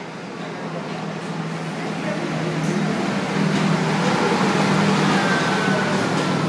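Train rolling into the station, its running noise growing steadily louder as the passenger cars come alongside, with a steady low hum under it and a faint high squeal near the end.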